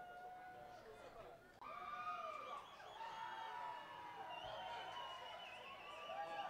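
Concert audience between songs: many voices talking and calling out at once, heard faintly from within the crowd.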